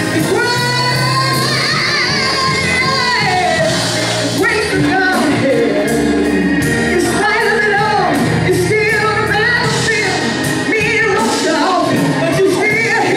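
A woman singing a gospel solo through a microphone, her voice sliding up and down in long melismatic runs, over instrumental backing with steady low bass notes.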